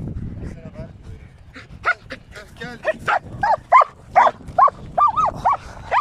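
A dog whining in short, high cries that rise and fall, about two a second, starting about two seconds in: an excited dog held back from livestock it wants to go after.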